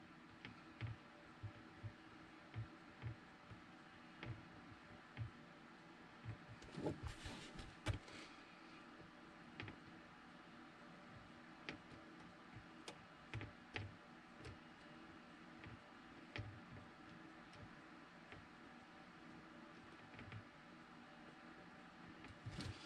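Near silence: a faint steady room hum with scattered light ticks and soft knocks from small hand-work with a soldering iron and a circuit board, bunched together about seven seconds in.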